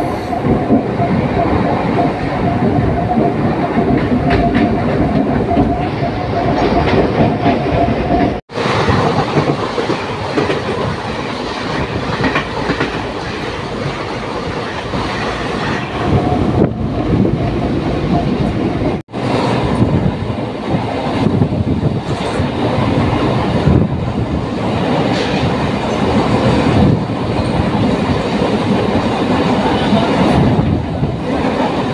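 A moving passenger train heard from its open door, its wheels clattering over the rails at speed with steady running noise. The sound drops out briefly twice, about a third and two-thirds of the way through.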